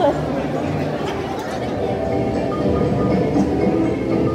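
Indistinct voices over a steady low rumble inside an amusement-park boat ride, with faint music and a few short high notes coming in during the second half.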